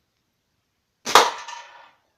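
Slingshot with a woven pouch fired at a target: one sharp crack about a second in, trailing off over most of a second, as the shot lands hard enough that the shooter thinks it put a hole through the target.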